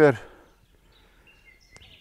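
Quiet riverbank ambience with a few faint, brief high bird calls and one small click.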